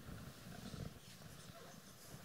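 Faint room noise: a low, irregular rumble with soft rustling, a little stronger in the first second.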